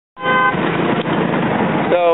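A vehicle horn honks once briefly, a short steady tone, then loud rushing road and wind noise from riding on an open motorbike in traffic.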